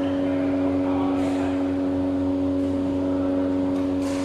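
A steady machine hum at a fixed pitch, with faint knocks of badminton play about a second in and again near the end.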